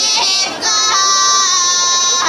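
Women's folk group singing a Pomak polyphonic song without instruments: a long held note with an ornamented, wavering line above it. The singing drops briefly about half a second in, then resumes on held notes.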